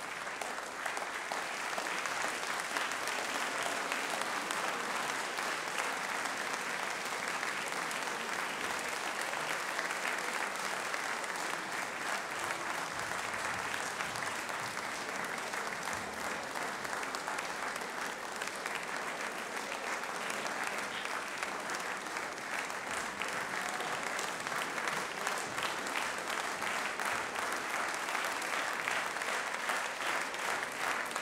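Audience applauding, swelling over the first couple of seconds and then continuing steadily.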